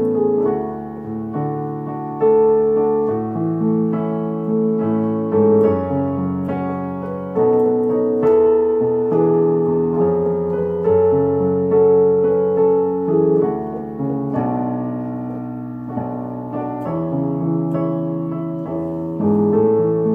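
Yamaha digital piano playing a slow hymn accompaniment in full chords. New chords are struck about every one to two seconds, each ringing and fading into the next.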